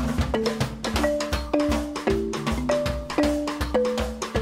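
Live duo of wooden xylophone and drum kit: the xylophone is struck with mallets in a quick, jumping line of short ringing notes while the drum kit is played busily with sticks, several hits a second.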